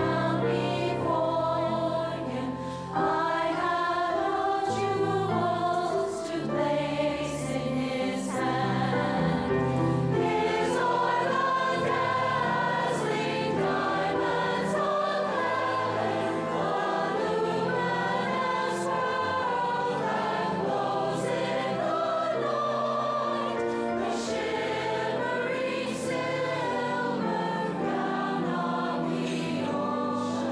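Large mixed adult choir singing in full voice, with orchestral accompaniment holding sustained low notes beneath the voices.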